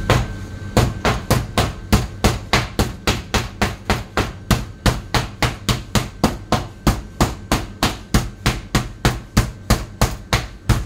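Meat tenderizer mallet pounding pieces of meat through plastic wrap on a plastic cutting board. The blows are dull and even, about three a second, starting a little under a second in.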